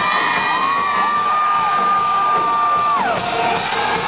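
Live rock band playing over a cheering, whooping crowd. One long high-pitched whoop holds for a couple of seconds, then slides down about three seconds in.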